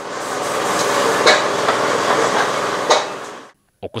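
Wood and charcoal fire burning in a metal cookstove under a pot: a steady hiss full of small crackles, with a couple of sharper pops, about a second in and near the end. It fades in at the start and stops about three and a half seconds in.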